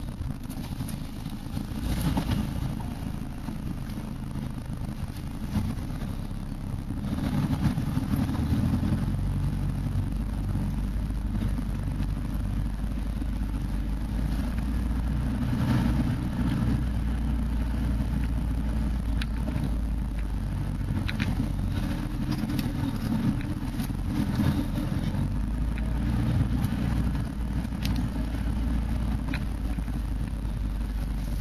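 Off-road 4x4's engine running with a steady low drone, heard from inside the cab while it drives along a rough dirt track, getting louder about a quarter of the way in. Scattered short knocks and rattles from the vehicle bouncing over the rutted ground.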